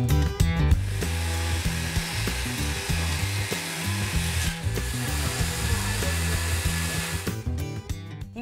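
Motorized pole saw cutting into a pecan tree branch overhead, a steady buzzing saw noise that starts about a second in, eases briefly about halfway and stops shortly before the end. Guitar background music plays underneath.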